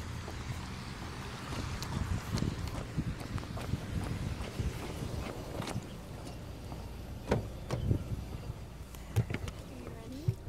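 A car driving slowly on wet pavement: a steady low engine and road hum with tyre noise, broken by scattered knocks and bumps, a few sharper ones in the last three seconds.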